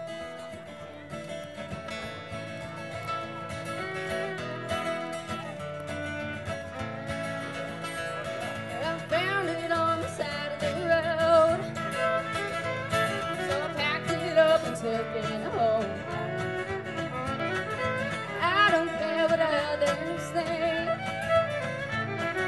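Instrumental intro of a country-bluegrass song played live on acoustic guitars and fiddle: steady acoustic guitar strumming, with the fiddle's sliding melody coming in over it from about nine seconds in and the music growing louder.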